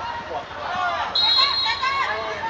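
Referee's whistle blown once, a steady high blast of just under a second starting a little past halfway, stopping play for a foul. Players and spectators are shouting around it.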